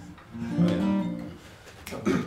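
Acoustic guitar played by hand: a chord plucked about half a second in, ringing and fading over the next second. A brief bit of voice follows near the end.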